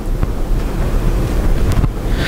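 Low rumble of microphone handling noise, with no speech.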